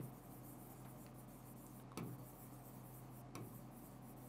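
Faint sound of a stylus writing on an interactive display's glass screen: light rubbing with a few soft taps, over a low steady hum.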